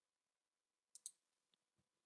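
Near silence with two faint, quick computer mouse clicks about a second in.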